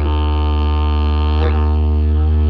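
Didgeridoo drone held on one low note, its overtones shifting in colour, with a brief change in tone about one and a half seconds in.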